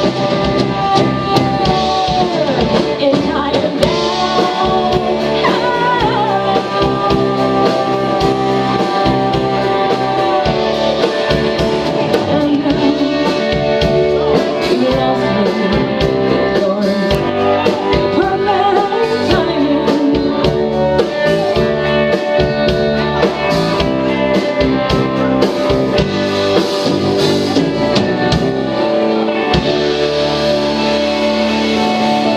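Live rock band playing: a woman singing over electric guitar, bass guitar and drum kit.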